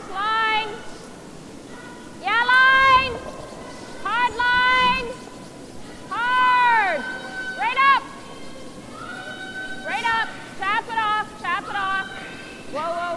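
Curlers' shouted sweeping calls: a series of long, loud, drawn-out yells, each rising then falling in pitch, with a quick run of shorter calls near the end. Brooms can be heard sweeping the ice underneath.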